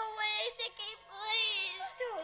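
A young girl crying hard: long, high, wavering wails broken by short catches of breath.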